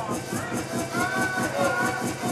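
A man's voice chanting in a sing-song through a microphone over a steady dance-music beat.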